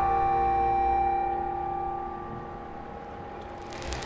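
A held electronic keyboard chord dying away over the first few seconds. A noisy sound comes in near the end.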